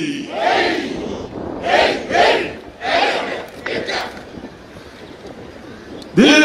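A police parade contingent shouting a cheer together: about five short chorused shouts in the first four seconds, after which the shouting dies down.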